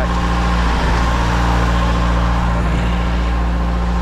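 Steady drone of a trailer-mounted Schwing concrete pump's engine and a ready-mix concrete truck running side by side.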